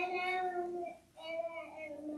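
A child singing two drawn-out notes, the second a little lower than the first.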